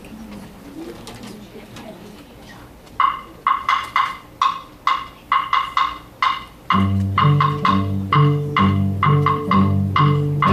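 A metronome ticking steadily, about two ticks a second, starts about three seconds in. A few seconds later a student string orchestra comes in with cellos and bass playing low notes in time with the ticks.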